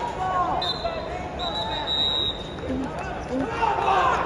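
Wrestling arena ambience: many overlapping voices and shouts from spectators and coaches. A high, thin tone sounds twice in the first half.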